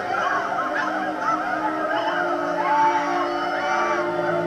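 Many voices calling out at once, overlapping high wavering cries, over low sustained music notes.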